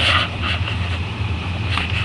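Handling noise from a webcam being moved about close to its microphone: a few short rustles and scrapes over a steady low hum.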